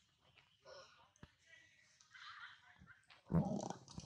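Macaques calling: faint short calls, then a louder, lower call about three seconds in.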